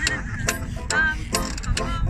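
Small acoustic jazz band playing, with a washboard's sharp scraped strokes keeping a quick beat, about four or five a second, over strummed strings and melodic horn lines.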